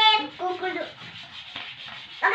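A child's hands rubbing across a cloth bedsheet, a steady rustle through the second half, after a brief child's vocal sound at the start.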